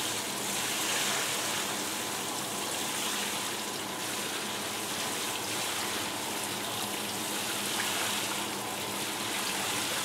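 A thin stream of water running over bassoon key posts and splashing into a sink: a steady hiss.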